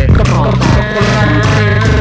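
Live-looped music from a loop station: layered vocal loops over a heavy bass line and a steady beat.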